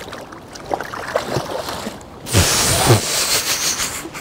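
Water splashing as a large striped bass is released by hand over the side of a kayak, with small knocks and sloshing at first and a loud burst of splashing lasting about a second a little past halfway.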